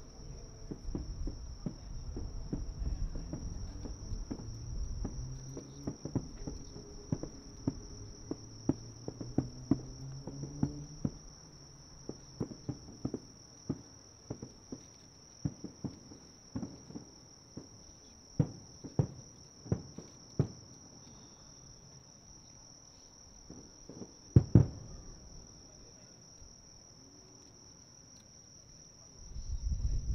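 Distant aerial firework shells of a star-mine barrage bursting in a rapid series of sharp bangs that thin out after about 21 s. A louder pair comes about 24 s in, all over the steady high chirping of insects.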